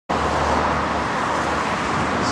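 Steady road traffic noise with a low hum underneath, starting abruptly and holding level.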